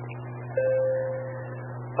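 A repeater courtesy tone: a single steady electronic beep lasting about a second, starting about half a second in, after the last transmission has ended. Under it, a steady low hum runs on the receiver audio.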